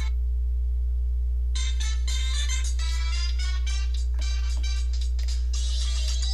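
Music from the Nokia 5310 XpressMusic phone's built-in loudspeaker: one track cuts off at the start, and after a short pause a new track begins about one and a half seconds in. A steady low hum runs underneath.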